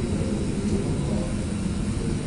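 Steady low rumble of lecture-hall room noise.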